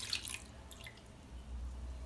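The last of the milk trickling and dripping from a plastic measuring jug into a stainless steel saucepan, faint and brief near the start, then quiet with a low hum.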